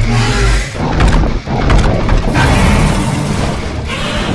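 Loud mechanical sound effects: a low rumble with clanking and sharp metallic hits about a second in and again around two seconds in.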